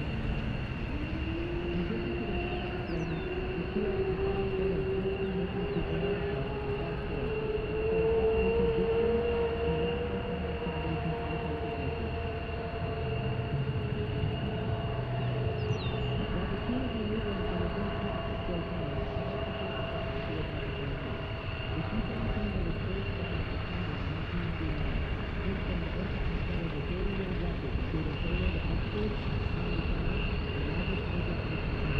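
C-17 Globemaster III's four Pratt & Whitney F117 turbofan engines running in flight, a deep rumble with a whine that climbs in pitch over the first ten seconds or so and then holds.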